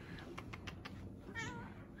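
Domestic cat giving one short, wavering meow about a second and a half in, preceded by a few faint clicks.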